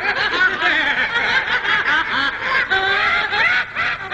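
High-pitched snickering laughter from a cartoon character's voice: rapid, quickly repeated peals that rise and fall in pitch.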